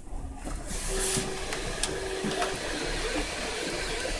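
3D printers running a print: the stepper motors give short, steady whining tones a couple of times over a constant hiss of fans.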